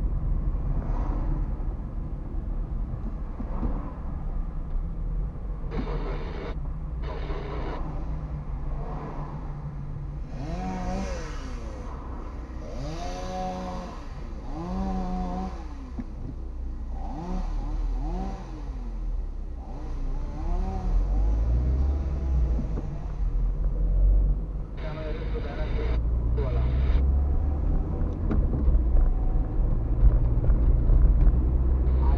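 Car driving in town traffic, its engine and road noise a steady low rumble heard from inside the cabin. A person's voice talks for several seconds around the middle.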